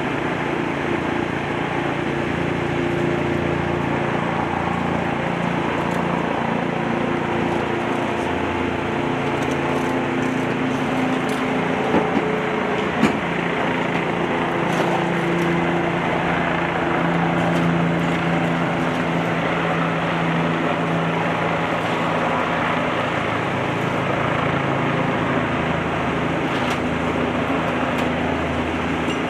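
Heavy-duty tow truck's diesel engine running steadily during a vehicle recovery, its pitch shifting a little about halfway through. Two short sharp knocks come about a second apart near the middle.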